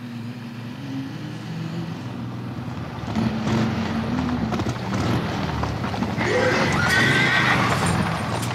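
Motorcycle engine running, then from about three seconds in the clatter of several horses' hooves closing in, with a horse neighing near the end.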